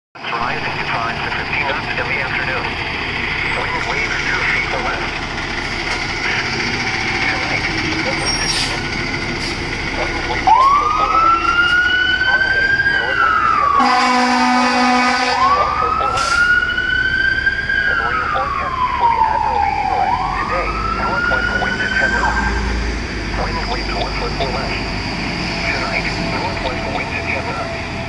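Fire engine siren wailing as the engine pulls out, starting about ten seconds in and sweeping up and down three times, with a brief air-horn blast in the middle. Later a low truck-engine rumble comes in.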